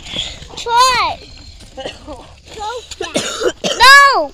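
A child's voice making two loud, high-pitched wordless calls, about a second in and again at the end, each rising and then falling in pitch. Quieter short vocal sounds come in between.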